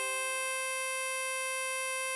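A tremolo harmonica holds a single blow note, C5 on hole 9, steady and unbroken. A lower tone under it fades out within the first second.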